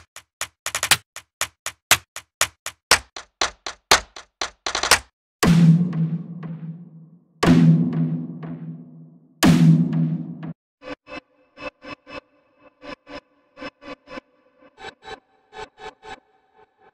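Sequenced cinematic sound-design presets from the Evolution Devastator Breakout Pro sample library. First comes a quick run of sharp ticks that speeds up, then three deep tom hits about two seconds apart, each ringing out and fading, then a pattern of short pitched pulses.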